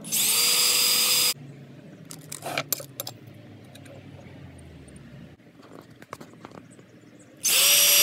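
Electric drill boring screw holes through a metal switch cover plate in two short runs, one at the start and one near the end, each about a second and a half long, its whine rising as the motor spins up and then holding steady. In between come quieter clicks and handling sounds.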